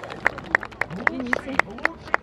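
Hand clapping close by, a steady rhythm of about four sharp claps a second, with faint voices of a crowd behind.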